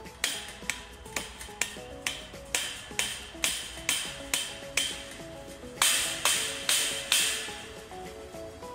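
A hammer striking the top of a metal post in a steady series of about fifteen sharp metallic blows, roughly two a second, the last four the loudest. Background music plays underneath.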